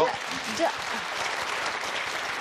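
Studio audience applauding: many hands clapping in a steady, dense patter, with a voice briefly heard over it in the first second.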